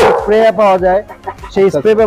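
A voice singing in long wavering notes, the vocal line of background music, with a sharp click right at the start.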